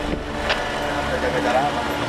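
Men's voices talking indistinctly over a steady low rumble, with one sharp click about half a second in.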